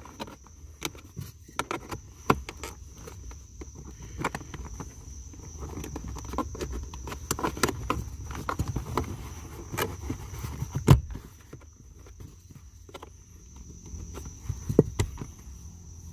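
Hands pushing a thin power cord under plastic car door-sill trim, with a wooden trim tool: scattered clicks, taps and rustles of plastic and cable. One sharp click comes about eleven seconds in and another near the end.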